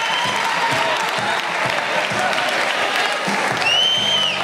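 Audience applauding steadily, with a high-pitched cheer near the end.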